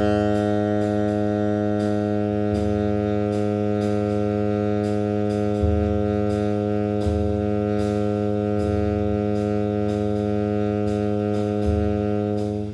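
Tenor saxophone holding one low long tone, steady in pitch and level with no vibrato. Underneath, a bass-and-drums play-along track keeps a light cymbal pulse, and the bass moves to a new root every second or two so the held note sounds against changing roots.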